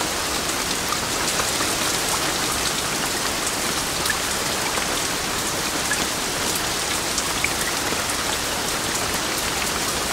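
Heavy rain pouring steadily, a dense even hiss with scattered sharper drop ticks.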